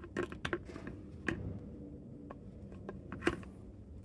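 A few light, scattered clicks and knocks of handling as a rifle's receiver and wooden stock are moved and test-fitted together, the sharpest one a little after three seconds in.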